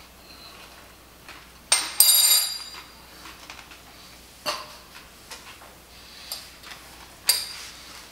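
A metal spoon clinks against something hard with a brief high ringing about two seconds in and again near the end. Smaller faint clicks come in between.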